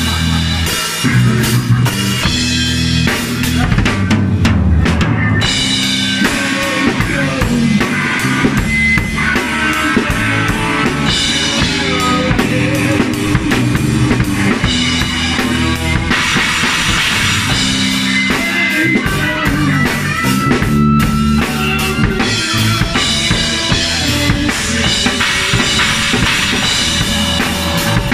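Live band jamming without vocals: a drum kit keeps up a steady beat with kick and snare, under a moving bass line and an electric guitar playing held and sliding lead notes.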